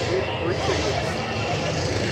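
Fairground ambience: a steady background din with faint, indistinct chatter from people nearby.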